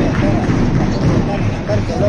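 Players and spectators talking over one another in an indoor sports hall, with a volleyball bouncing on the court floor.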